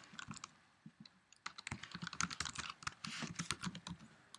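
Typing on a computer keyboard: a few scattered key clicks, then a quick run of keystrokes from about a second and a half in until shortly before the end.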